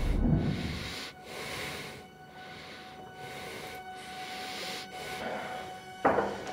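Soundtrack ambience in a tense film: a soft, airy hiss with a faint steady tone, swelling and breaking off several times. It comes after the fading tail of a loud low whoosh in the first second.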